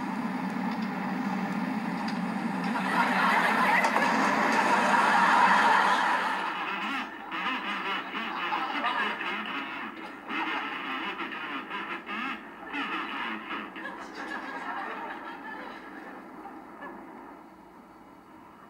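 Studio audience laughter, swelling to a peak a few seconds in and then dying away gradually with uneven dips.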